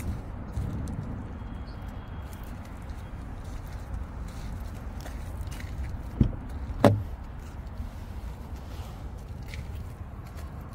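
A GMC Acadia's rear side door being opened, with two sharp clicks about two-thirds of a second apart (handle pull and latch release), over a steady low rumble.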